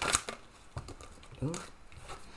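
Tarot cards being shuffled by hand: a quick run of sharp card flicks that stops just after the start, then a few light card taps.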